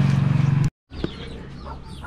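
A steady motor hum that cuts off abruptly early on, followed by faint short bird calls.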